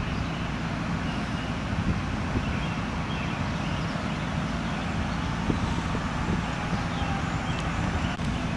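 Vehicle engines idling in a steady low rumble, as from the fire trucks and other vehicles parked at a fire scene.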